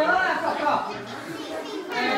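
Children's voices talking and calling out at once, several young voices overlapping.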